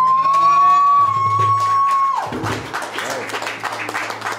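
A live acoustic rock band's final long held high note, swooping up and holding for about two seconds before cutting off, followed by scattered applause.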